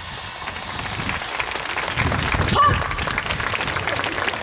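Audience applauding, the clapping swelling over the first couple of seconds, with a call or cheer rising above it about two and a half seconds in.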